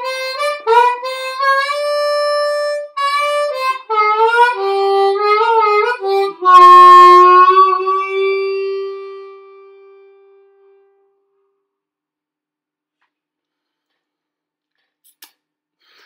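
Harmonica played cupped against a Silverfish Dynamic Medium Z dynamic harmonica microphone: a phrase of short notes with bends sliding up in pitch, ending on a long held low note that dies away about ten seconds in.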